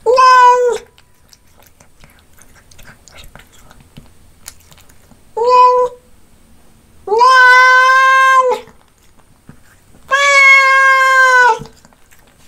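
Domestic cat meowing four times: a short meow at the start, a brief one about five seconds in, then two long, drawn-out meows of steady pitch, each about a second and a half.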